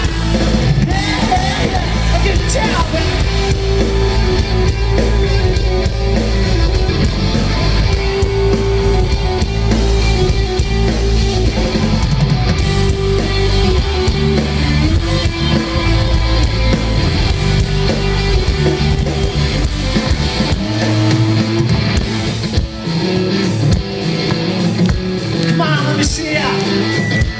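Rock band playing live, with electric guitar and drums, recorded on a phone from the crowd in front of the stage. The deep low end drops out for the last few seconds.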